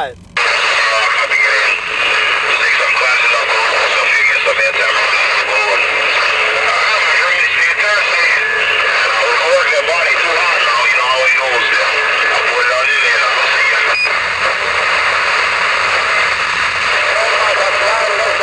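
A CB radio's speaker putting out heavy static with a faint, garbled voice buried in it: a weak, distant station coming in through the noise. It cuts in abruptly just after the start and holds steady and loud, with a thin, narrow-band sound.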